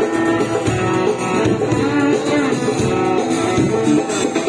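Live folk-fusion band playing: acoustic guitar, violin and electric bass over hand drums.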